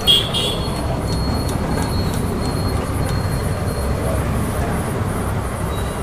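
Steady low rumble of street traffic, with a thin faint high whine over it for the first few seconds.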